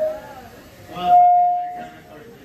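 Synthesizer sounding a few stray tones before a song: a short rising-and-falling glide, then a single clear held tone for almost a second, the loudest thing here.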